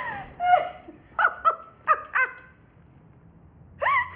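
A woman laughing in short, high peals: a run of about six bursts in the first two and a half seconds, a lull, then another burst near the end.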